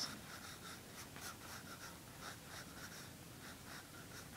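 Faint pencil scratching on paper in quick short back-and-forth strokes, about four or five a second, as a small area is filled in with pencil.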